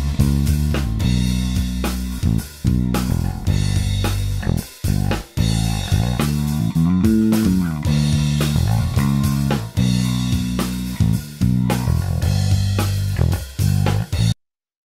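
Electric bass guitar line with drum overhead and kick-drum tracks playing back, the bass tone being reshaped live by Melodyne's Brilliance and Contour macros toward a punchier, more aggressive sound. About halfway through, a bass note slides up and back down.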